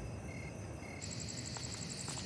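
Crickets chirping at night: short regular chirps about twice a second, then about a second in a denser, higher, continuous cricket trill takes over.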